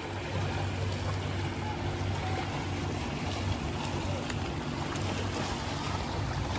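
A steady engine hum under a constant wash of noise, with no change in pitch.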